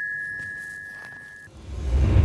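The last note of a short glockenspiel-like mallet-percussion sting rings on and fades away. About a second and a half in, a whoosh sound effect swells up, heavy in the low end, marking a scene transition.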